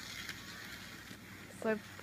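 Small electric motor of a model trolley running at full speed on its track, a steady even whir. A short spoken phrase comes near the end.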